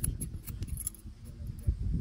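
Barber's steel scissors snipping hair held over a comb: a quick, uneven run of crisp snips, over a low rumble that swells near the end.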